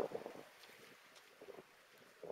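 Quiet outdoor ambience with faint wind on the microphone, opening with one brief louder sound.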